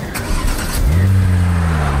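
A car engine revving up about a second in, then holding a steady low drone.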